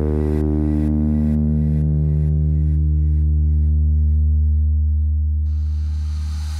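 A held low electronic synth bass note in an electro dance track, its higher overtones slowly fading so the tone turns duller and darker. Faint rhythmic pulses, about two a second, die away beneath it, and a soft hiss comes in near the end.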